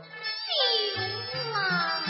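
Teochew opera music: a sliding melody line swoops down in pitch over low, steady held notes that drop out briefly about half a second in and then return.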